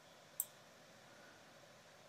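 A single short click of a computer mouse button about half a second in, with near silence around it.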